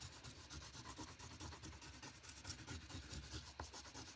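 Oil pastel being rubbed on paper, a faint, quick run of repeated scratchy strokes as a yellow stick colours in and blends an area.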